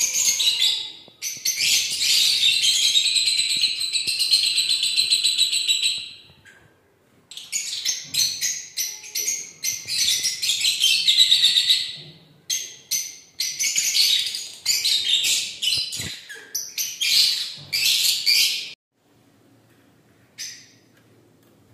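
Lovebirds chirping in a fast, high-pitched chatter, with a short break about six and a half seconds in and stopping a little before the end.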